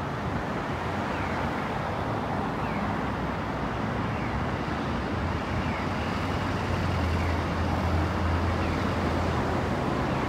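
Road traffic running steadily, with a low engine rumble that swells about two-thirds of the way in as a vehicle goes by.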